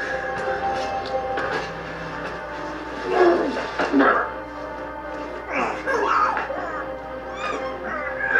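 Television drama soundtrack: a sustained music score of held notes, with brief strained voices from the show coming in twice.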